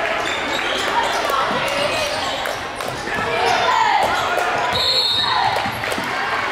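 Basketball game sound in a gym: the ball bouncing on the court, with voices in the hall. Near the end, a referee's whistle blows once, briefly, calling a foul.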